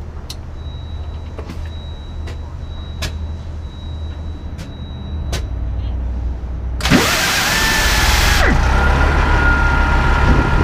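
Transit bus diesel engine starting about seven seconds in: a loud burst of noise as it cranks and fires, the engine speed rising and then dropping back about a second and a half later, then settling into an idle with a steady high whine. Before the start there is a low steady hum with a few faint clicks and a thin steady high tone.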